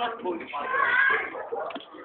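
A person's high-pitched, drawn-out cry or squeal, about a second long, starting about half a second in, among bits of voices.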